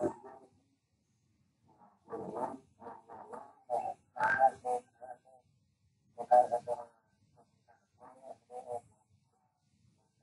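A man's voice coming through a video call in short, broken bursts of speech with pauses between them; the call audio is compressed and garbled enough that it comes across croaky.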